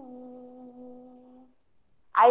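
A woman humming one long, steady, low note at the tail of a sung phrase, fading out about a second and a half in.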